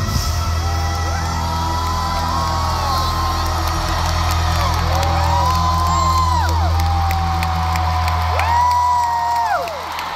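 A live band's final low chord held out, with the arena crowd cheering and whooping over it; the chord fades away near the end.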